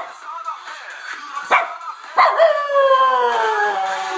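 A dog howling along to music: a short yelp about a second and a half in, then a long howl from about two seconds in that slowly falls in pitch.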